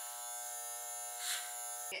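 Andis electric hair clippers running with a steady buzz as they cut through the ends of a wig's hair. The buzz stops suddenly near the end.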